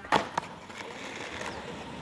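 Skateboard dropping off a wooden box ledge at the end of a tailslide and landing on concrete: two sharp clacks a quarter second apart, then the wheels rolling steadily on the concrete.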